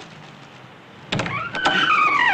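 Car tyres screeching: a loud high squeal that starts suddenly about a second in with a few sharp clicks, then falls in pitch.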